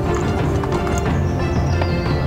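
Background music with horses' hooves clip-clopping at a walk as a pack string moves along a trail.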